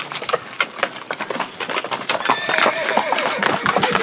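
Horses' hooves clip-clopping on a dirt street as several riders approach at a walk, with a short pitched cry in the middle.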